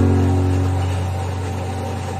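Background music: a low sustained note, struck just before and slowly fading.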